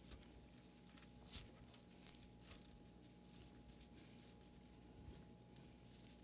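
Near silence: faint rustling and soft ticks of thin Bible pages being turned, over a steady faint room hum.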